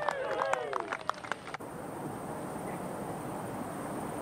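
Scattered clapping and calls from a small golf gallery for a holed birdie putt, cut off abruptly about one and a half seconds in; after that only a steady outdoor background hiss.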